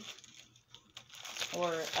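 A glossy mailing envelope crinkling as it is handled and laid on a table: a run of soft crackles, with a short spoken word near the end.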